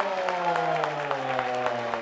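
A stadium PA announcer holding one long drawn-out syllable that slides slowly down in pitch, calling out the scorer of a goal. Under it the crowd claps steadily in rhythm, about five claps a second.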